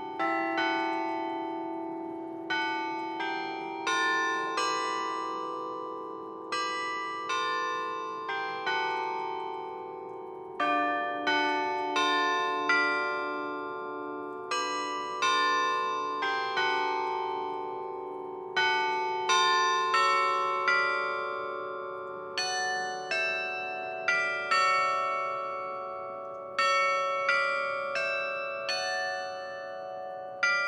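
Carillon bells playing a hymn-like melody, each note struck and left to ring and die away, the notes overlapping. Through the middle a lower bell is struck repeatedly, about twice a second, under the tune.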